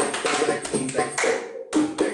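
Body percussion in a simple Middle Eastern rhythm: hands slapping the thighs in quick, evenly spaced strokes. The pattern breaks off briefly about one and a half seconds in, then starts again.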